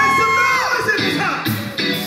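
Live gospel band of electric guitar, bass and drums playing, with a long high held note that ends under a second in, followed by a few sharp drum hits in the second half.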